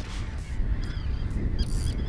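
Waterbirds calling: a few short, arching honk-like calls, over a steady low rumble.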